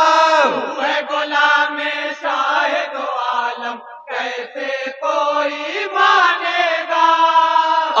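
A group of men singing an Urdu naat together in chorus, a held, chant-like melody sung into a microphone, with a short break about four seconds in.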